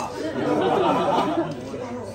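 Several people talking over one another in a room: general chatter from the gathered guests, with no single clear voice.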